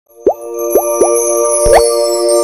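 Animated logo intro sting: three quick rising bloop pops, then a longer upward slide, over a held bright synth chord with high shimmer.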